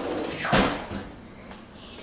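A kitchen drawer sliding shut: one quick sliding sweep about half a second in, then quiet.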